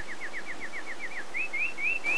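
A bird calling in a rapid series of short, clear notes: falling notes at about seven a second, then slower rising notes at about four a second from a little past a second in.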